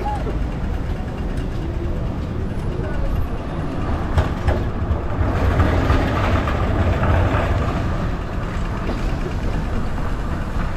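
City street traffic running steadily at a busy intersection, with the chatter of pedestrians crossing, busiest in the middle.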